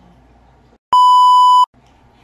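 An edited-in censor-style bleep: one loud, steady, high beep about three-quarters of a second long, starting about a second in. The sound track drops to dead silence just before and after it.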